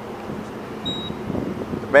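Street traffic noise at a city intersection, with wind rumbling on the microphone and growing louder in the second half. A short faint high beep sounds about a second in.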